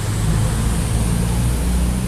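Low rumble of a passing vehicle, strongest for the first second and a half and easing near the end, under a steady hiss of rain.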